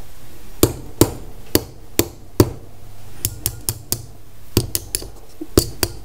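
Hammer tapping a spent .22 brass shell used as a rivet, flattening and setting it to hold the flatware piece together: about fifteen sharp, separate taps, spaced out at first, then in quicker runs.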